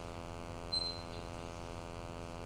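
Steady electrical mains hum from the lecture-hall sound system, with a short, faint high beep a little under a second in.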